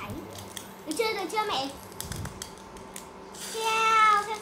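Light metallic clicks and clinks from a small stainless steel bowl and mini pot. Near the end, beaten egg is poured into hot oil in the pot and a sizzle starts, under a loud, drawn-out child's voice that falls in pitch.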